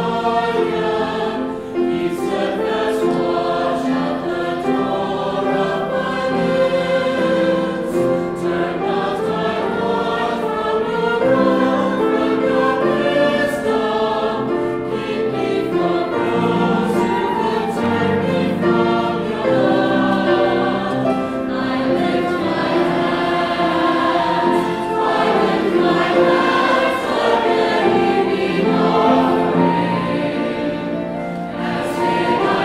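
Mixed choir of men's and women's voices singing, accompanied by piano and violin.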